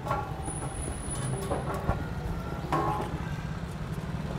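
Street traffic ambience: a steady low rumble of passing vehicles, with a few faint, brief snatches of voices above it.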